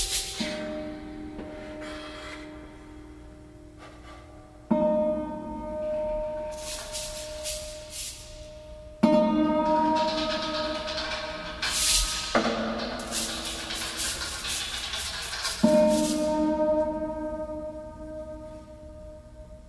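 Slow, improvised-sounding music from the Celestial Harp, a 72-string harp, with percussion. Four ringing chords are struck, each about three to four seconds after the last, and each sustains and fades. Between them come washes of shimmering hiss.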